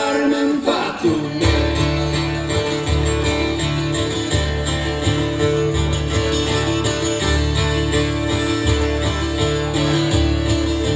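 A live folk-rock band playing, with strummed acoustic guitars over a bass line that changes note about every second and a half, and long held melody notes on top.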